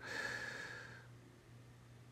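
A person breathing out through the nose, one soft breath lasting about a second, then quiet apart from a faint steady low hum.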